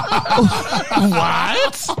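Several people chuckling and snickering, their laughter overlapping with bits of speech.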